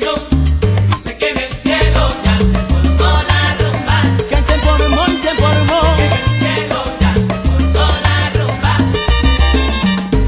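Instrumental salsa music from the song's opening bars, with no vocals: a pulsing bass line under sharp, regular percussion and pitched melodic lines.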